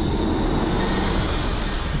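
A loud, steady rumbling sound effect with a deep low end and no distinct beats.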